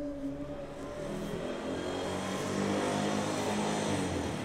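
A motor vehicle's engine running and growing louder.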